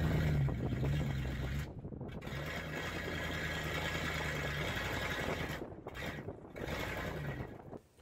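A Dodge Ramcharger's 318 V8 engine running with a steady low note, heard through a phone recording, dipping briefly about two seconds in and again near six seconds. The engine has a fault that makes it pop and backfire when accelerated, and die, which the owners put down to ignition timing.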